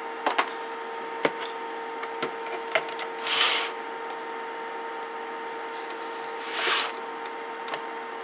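Handling noise from an opened CB radio chassis being picked up and turned over on a workbench: light clicks and knocks of the metal case in the first few seconds, then two brief scraping rubs, about three and a half and seven seconds in.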